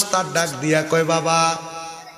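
A man's voice chanting a line of a sermon in a sung, drawn-out melody, holding long notes with pitch bends between them and trailing off near the end.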